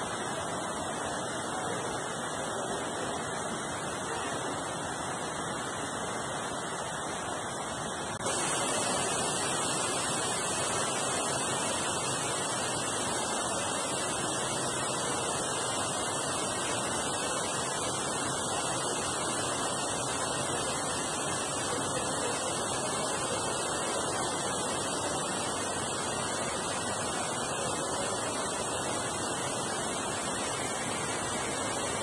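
Steady, pitchless rushing noise, like falling water or moving air, which steps up louder about eight seconds in.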